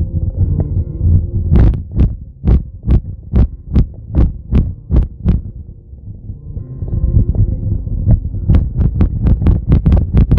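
Low road rumble inside a moving car, with two runs of sharp, evenly spaced ticks about two to three a second.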